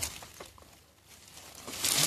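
Dry stalks and brush rustling and crackling as a hand pushes through them, quiet in the middle and picking up again near the end.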